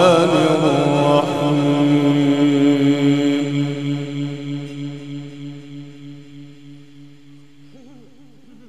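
A male Quran reciter chanting in the Egyptian tajweed style through a microphone at the opening of his recitation. An ornamented, wavering phrase settles about a second in into one long held note that slowly fades away over the following seconds.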